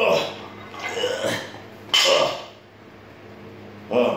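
A man breathing hard after a set of heavy barbell clean and presses, with a loud gasping breath at the start, another about a second in and a louder one about two seconds in.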